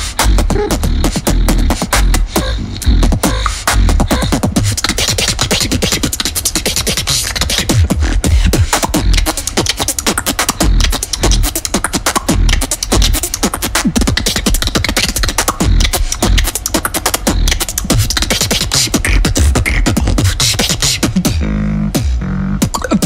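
Solo vocal beatboxing into a handheld microphone: a fast, dense stream of mouth-made drum strokes over deep bass sounds, kept up without a break.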